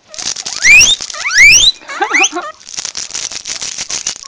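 Guinea pig wheeking: a run of sharp rising squeals, several in quick succession, strongest in the first half. A dense crackling rustle fills the second half.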